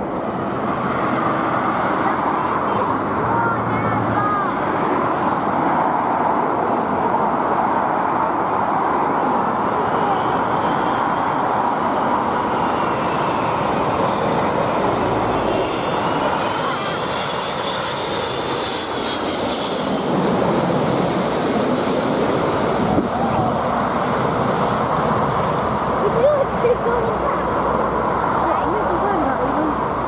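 Airbus A380 on final approach passing low overhead: a steady jet roar, with a high engine whine that rises and then falls between about ten and twenty seconds in. The roar turns brighter around twenty seconds as the aircraft passes.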